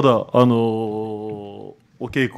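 A man's voice: a few spoken syllables, then one vowel drawn out at a steady pitch for over a second, like a long hesitation sound, before a short pause.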